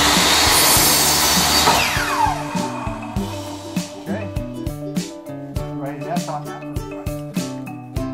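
Electric compound miter saw running and cutting through a wooden fence picket. About two seconds in the trigger is released and the blade winds down with a falling whine. Background music with a steady beat runs underneath and is all that is left after that.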